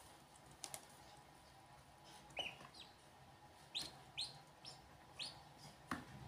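Ducklings peeping: about five short, high peeps, faint, spread over the second half, with a couple of faint clicks about half a second in.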